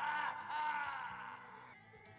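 A high wordless wailing voice in the TV play's soundtrack, holding a long wavering note that swells and then fades away near the end.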